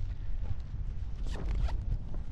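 Low wind rumble on the microphone of a paraglider in flight, with a few short sharp sounds and a brief laugh about a second and a half in.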